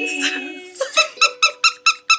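A held final sung note and ukulele chord fade out, then a plush squeaky toy is squeezed over and over in quick even squeaks, about five a second.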